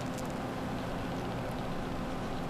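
Steady low hiss with a faint steady hum underneath: background room tone, with no distinct event.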